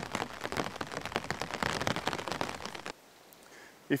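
Rain pattering on a surface, a dense even patter of drops that cuts off abruptly about three seconds in.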